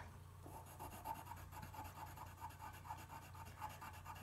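Pencil shading on paper: faint, quick back-and-forth strokes of the lead, repeating several times a second, as the wing tips are darkened.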